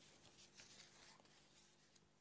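Near silence: a faint steady electrical hum in a pause of the soundtrack.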